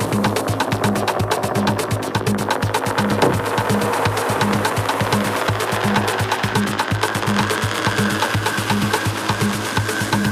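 Techno DJ set: electronic dance music with a steady beat and fast, even hi-hat ticks. A high held tone comes in about seven seconds in.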